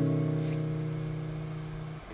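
A held acoustic guitar chord ringing out and slowly fading away, with no singing over it.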